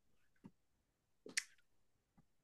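Near silence with two faint, brief clicks, a small one about half a second in and a slightly louder one about a second and a half in.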